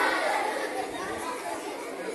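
A large group of schoolchildren chattering among themselves, the noise of many overlapping voices gradually dying down.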